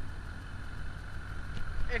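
Pickup truck engine running steadily at low revs as the truck crawls over a dirt ledge, a low rumble.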